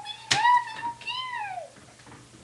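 A single long, high-pitched vocal cry, held steady for about a second and then falling in pitch before it stops.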